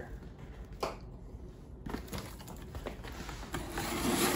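Cardboard box flaps being handled and pulled open: faint rustling of cardboard, with two brief scraping sounds about a second apart.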